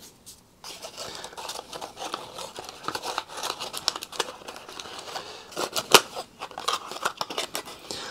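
Small eye-drop bottles and their packaging being handled close to the microphone: a steady run of light crinkly rustles and small clicks, with one sharper click about six seconds in.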